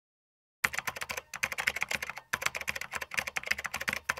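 Computer keyboard typing sound effect: a rapid run of key clicks starting about half a second in, with two short pauses.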